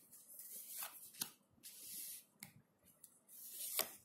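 Tarot cards being handled and dealt onto a cloth: several soft swishes of card sliding against card, with a few light taps, the loudest just before a card is set down near the end.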